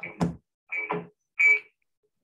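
Three short, choppy bursts of a distorted voice over a video call that is breaking up on a poor internet connection.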